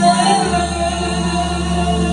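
Live Turkish art music: a female soloist singing, with an ensemble of violins and clarinet accompanying.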